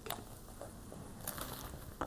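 Faint clicks and light rustles of a hardcover comic album being handled and lowered.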